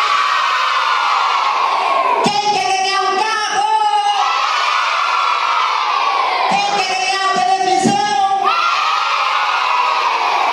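A roomful of children shouting and cheering together, in loud waves of about two seconds each, with held shouted notes between the screams.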